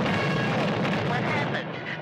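Cartoon sound effect of a sustained, loud, rumbling blast, with short wavering tones rising over it near the end.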